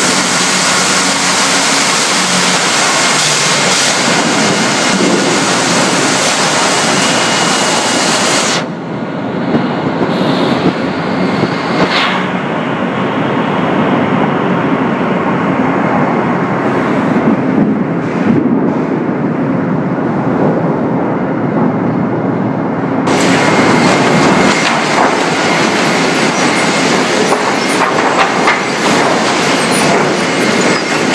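Loud sawmill machinery running: a dense, steady din of saws and chain conveyors clattering as boards move through the mill. About nine seconds in the high hiss drops away, leaving a lower rumble and clatter, and near the end the bright hiss comes back.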